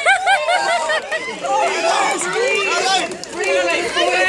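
A woman giving a few short, high squeals in the first half second, just after being drenched with ice water. Several people chatter over one another after that.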